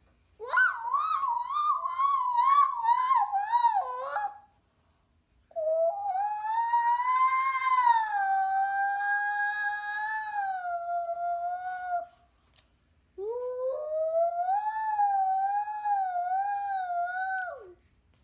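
A toddler singing his wordless fire-truck song, a high siren-like wail in three long held phrases. The first wobbles quickly up and down, the second rises and then slowly sinks, and the last wavers and drops off at the end.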